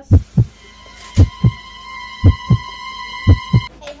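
A heartbeat sound effect: four loud double thumps, about one a second. A steady high ringing tone joins about a second in and stops just before the end.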